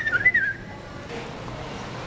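A person whistling a single short note that climbs, then wobbles and stops about half a second in. Low background hum follows.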